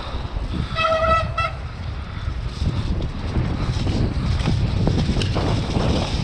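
Downhill mountain bike riding a dirt woodland trail, with wind on the helmet camera's microphone and steady tyre noise and rattles. About a second in comes a brief pitched honk in two short pulls, typical of disc brakes squealing under braking.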